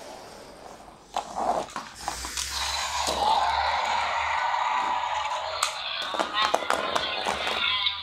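A child's voice making a long, drawn-out sound effect for the toys, starting about a second in, with a few small clicks from handling toys near the end.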